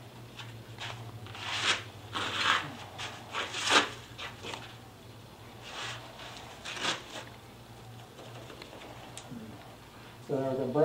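A hand brushing and rubbing over the rough turned surface of a big-leaf maple burl, a series of short scratchy swishes at uneven intervals. A low steady hum runs underneath.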